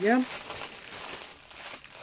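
Clear plastic wrapping crinkling as a bundle of small bags of diamond-painting drills is handled.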